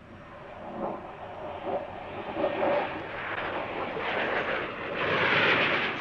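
Jet aircraft engine noise, a dense rushing roar that builds steadily and is loudest near the end as the jet passes close.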